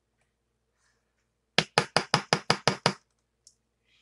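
After about a second and a half of near silence, eight quick, sharp knocks of a hard object on a hard surface, about six a second, then they stop.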